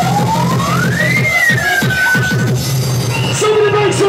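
Loud electronic dance music played through a club sound system, with a siren-like synth tone that sweeps up in pitch, peaks about a second in, then slides down and holds before cutting out. A steady bass pulse runs underneath.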